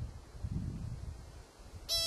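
An American pika gives a single short, high-pitched call near the end, over a low background rumble.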